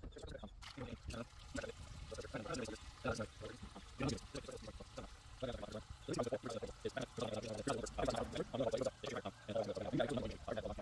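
Sped-up, choppy sound of used cooking oil pouring through a cloth sheet filter into a barrel: a rapid, garbled liquid patter.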